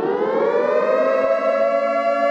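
Air-raid-style siren sound effect, its pitch finishing a long upward glide and then holding one steady high wail.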